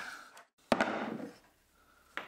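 A sharp metallic click about two-thirds of a second in, followed by a brief scraping rattle that dies away: a screwdriver turning the rusted cap-iron screw of an old hand plane that has just broken free.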